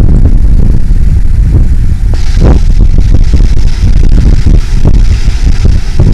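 Wind buffeting the microphone on a moving boat: a loud, rough low rumble with irregular thumps. A higher hiss joins about two seconds in.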